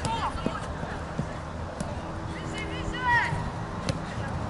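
Football players calling out during open play, with one louder, high-pitched shout about three seconds in and a sharp thud of the ball being kicked near the end.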